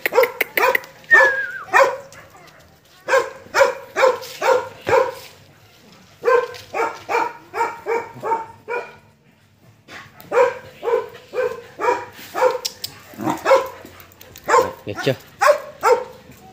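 Dog barking over and over in runs of about two to three barks a second, with a quicker, softer run of about four a second midway and short pauses between runs.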